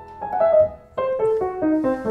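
A 1905 Bechstein Model 8 upright piano being played: a few notes, then from about a second in a run of single notes stepping downward at about five a second, with a very even tone.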